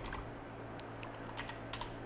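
Faint typing on a computer keyboard: a handful of scattered, irregular key clicks.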